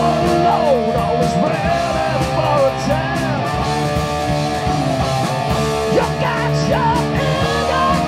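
Live rock band playing loud: distorted electric guitars over bass and drums, with a lead line that bends up and down in pitch over the top.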